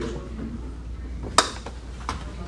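Room tone with a steady low hum and one sharp click about one and a half seconds in.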